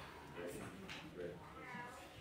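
Faint murmur of voices in the congregation, with a short, high, wavering call near the end.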